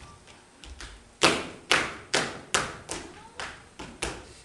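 A run of about seven sharp, echoing hits, a little over two a second, starting about a second in; the first is the loudest and the rest fall off.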